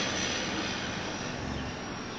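Heavy semi-truck with a dump trailer passing through street traffic: a steady engine and tyre rush that slowly fades.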